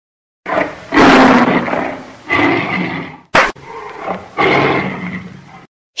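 A cartoon lion roaring three times, the first roar the longest and loudest, with a single sharp slap about three and a half seconds in.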